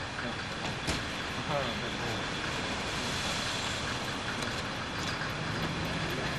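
Steady street traffic noise, with a large vehicle running close by and faint voices underneath.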